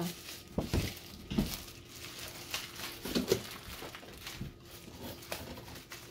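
Plastic packaging crinkling and rustling in irregular bursts as a small wrapped part is unwrapped by hand.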